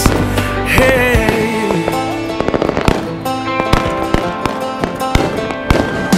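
Fireworks popping and crackling in quick, irregular strings of sharp reports, thickest in the second half, over a loud music track with no singing.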